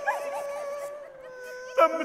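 A person's voice holding one long, wavering wail, with a second voice briefly over it in the first half second and other voices starting near the end.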